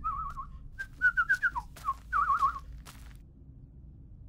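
The cartoon mouse whistling a tune in three short warbling, trilled phrases over the first few seconds, with a few faint clicks between them.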